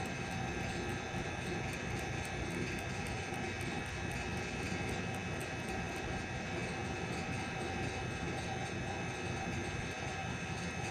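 A steady machine hum with a low rumble and several held tones, unchanged throughout, with faint regular ticking high above it.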